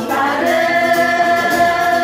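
A group of women singing together, holding one long, steady note through most of the phrase.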